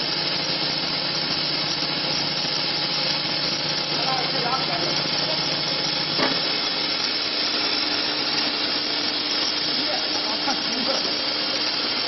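Corn puff snack extruder running, a steady mechanical noise with a low motor hum. Its hum shifts slightly about six seconds in, with a single knock.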